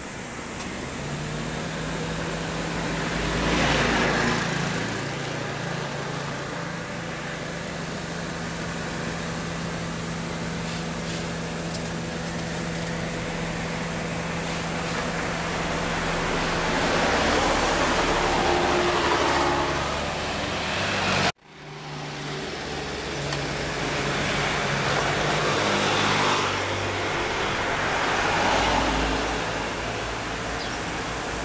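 Street traffic: about four cars pass by, each one swelling and fading, over a steady low engine hum.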